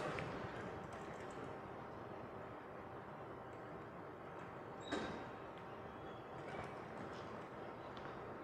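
Low, steady room tone picked up by a presentation microphone, with one faint short click about five seconds in.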